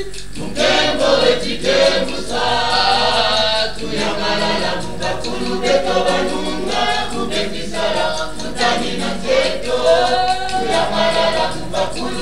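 A choir singing a Kikongo song, many voices together in long phrases with short breaks between them.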